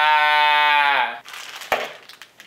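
A man's long, drawn-out mock-anguished wail, one held note that dips and stops about a second in. A single short knock follows near the end.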